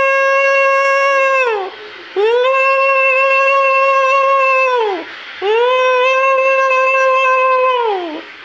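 Conch shell (shankh) blown in long steady blasts, each sliding up at the start and dropping off at the end: one ends about two seconds in, then two more follow after short breaths.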